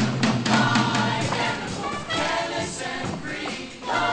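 High school show choir singing in harmony over a band accompaniment with a steady beat.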